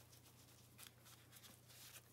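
Near silence: room tone with a steady low hum and a few faint rustles of a hand handling a leather-and-mesh fingerless gym glove.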